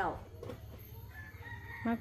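A rooster crowing faintly: one drawn-out call on a steady high pitch in the second half.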